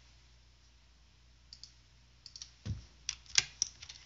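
A few computer keyboard keystrokes, scattered faint clicks and then a quick cluster of sharper ones in the second half, one with a low thud.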